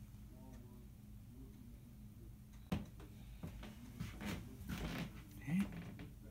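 A few light clicks and knocks as the wooden tuning-pin test block and tools are handled on a workbench, with one sharper click about three seconds in. Faint muttering can be heard at times.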